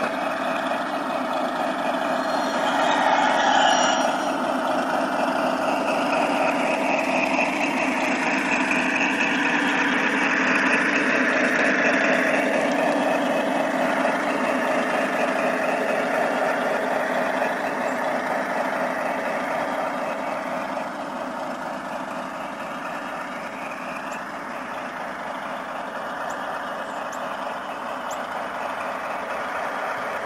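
LGB G-scale Alco diesel model locomotive running along snow-covered garden-railway track with a steady mechanical drone. It is loudest a few seconds in and again around the middle, and quieter in the last third.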